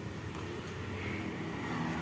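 Steady, low engine hum, with no sudden sounds.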